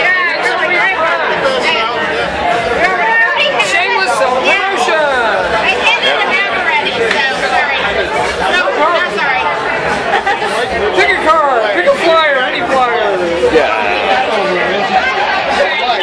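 Overlapping chatter of many voices in a busy, crowded bar room.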